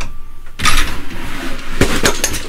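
Wooden drop-side rail of a crib rattling and sliding as it is worked loose and lowered, ending in a sharp wooden knock near the end.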